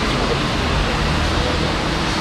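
Steady rushing background noise of city street traffic, even and unbroken.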